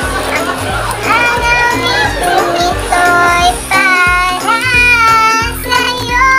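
A song playing: a sung vocal line with held, wavering notes over a steady beat.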